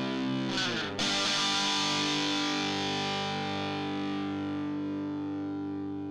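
Outro music: a distorted electric guitar chord, a quick sliding sweep about half a second in, then a new chord struck at about one second that rings out and slowly fades.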